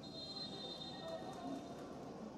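Referee's whistle blown in one long, steady, high-pitched blast of nearly two seconds, signalling the restart of play after a goal, over a faint crowd murmur.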